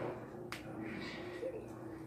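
A single sharp click about half a second in, over faint room background with a steady low hum.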